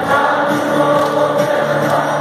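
Live rock concert music heard from the stands of a large arena: a band playing and many voices singing together in sustained notes, with a regular beat.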